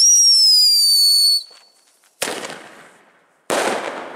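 Fireworks: a loud whistle about a second and a half long, rising briefly and then falling slightly in pitch, followed by two bangs a little over a second apart, each fading away.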